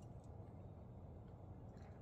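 Near silence: a faint steady low background hum, with a faint tick or two.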